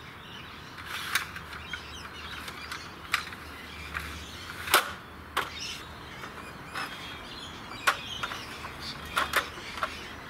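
TXP squeeze-box aluminium step ladder being folded up by hand: scattered clicks and knocks of its metal steps and spreader bars, the loudest about halfway through.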